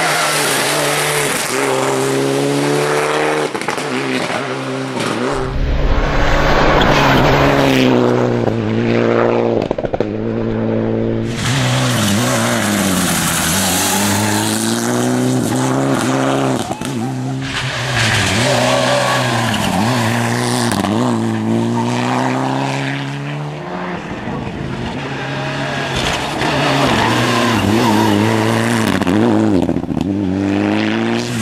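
Mitsubishi Lancer Evo IX rally car's turbocharged 2.0-litre four-cylinder engine revving hard and easing off, its pitch climbing and dropping again and again through gear changes and corners, over several passes.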